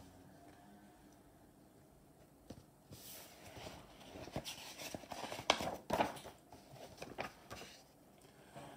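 Pages of a hardcover picture book being turned by hand: faint paper rustling with a few light taps and clicks, starting about two and a half seconds in.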